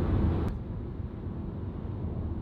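Steady road and engine noise inside a car driving on a highway, a low rumble with no speech. About half a second in the higher hiss drops away and only the duller rumble remains.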